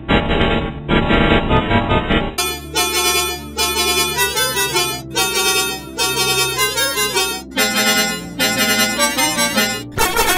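A bus air horn's reedy tone, edited into short musical phrases that step up and down in pitch like a melody. It sounds dull and muffled for the first couple of seconds, then full and bright, with short gaps about five and seven and a half seconds in.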